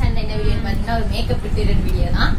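A woman talking, over a steady low rumble.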